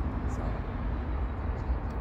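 Steady low rumble of outdoor background noise, with an even hiss above it and no clear events.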